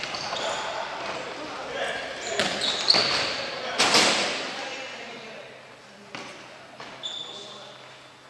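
Futsal ball being kicked and bouncing on a wooden gym floor, with short high squeaks of sneakers and players' shouts. The loudest are two sharp kicks about three and four seconds in, echoing in the hall.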